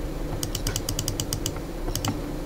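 A quick run of small sharp clicks, about ten in a second, from a computer being worked while the on-screen page is zoomed, with one more click near the end, over a steady low hum.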